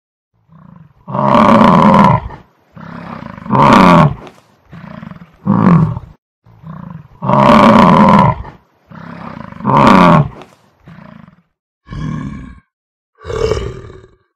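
A large animal roaring in a series of about a dozen calls, long loud roars alternating with shorter, softer ones, with brief pauses between them.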